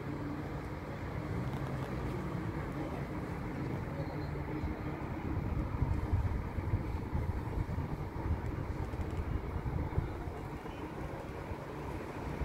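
Low, steady rumble of a distant engine with a faint hum, growing louder and more uneven in the middle before easing off.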